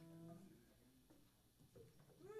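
Near silence: room tone with a faint low hum from the stage, and a faint held note that fades out within the first half second.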